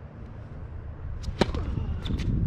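A tennis racket strikes a tennis ball once, a sharp crack about one and a half seconds in, with a few lighter clicks around it.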